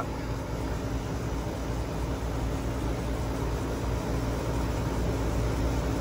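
New Lennox central air conditioner's outdoor condenser unit running: a steady, even hum from the compressor with the rush of the condenser fan.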